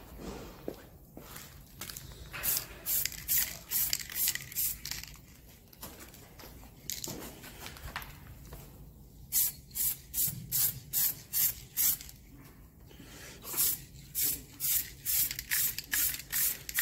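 Aerosol spray-paint can spraying a light dusting coat onto a car wing panel, in runs of short hissing bursts about two to three a second with pauses between runs.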